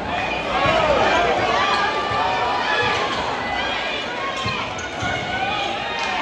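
A basketball bouncing on a hardwood gym floor during play, a few separate knocks, over the steady chatter and calls of a crowd in the hall.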